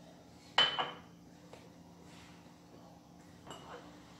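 A china teacup set down on a stone countertop with one sharp clink about half a second in. Then a spoon mixes flour into batter in a plastic bowl with soft scraping and a few light knocks near the end.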